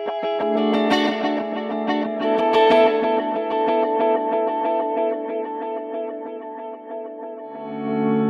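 Guitar played through a NUX NDD-7 Tape Echo pedal: sustained notes and chords with a fast train of tape-style echo repeats piling up into a thick wash. Near the end a lower chord swells in.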